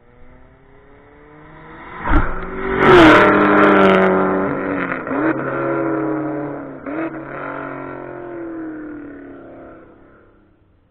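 A car at full throttle on a race track approaches and passes close by about three seconds in, with a rush of noise as it goes past. The engine note then drops as it pulls away down the straight, breaking briefly twice as it shifts gears, and fades out near the end.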